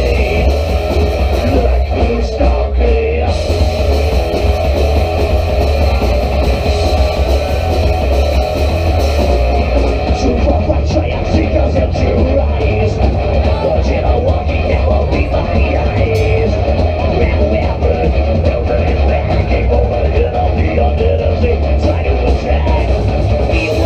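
Horror punk band playing loud and steady live: distorted electric guitars, bass and drums, with a heavy low end.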